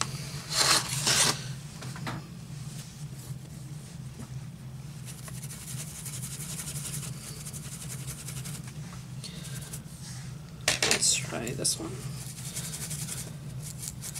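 Soft rubbing of a makeup brush worked against a paper tissue, over a steady low hum.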